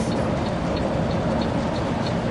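Steady engine and tyre-on-road noise inside a tour coach cruising at motorway speed.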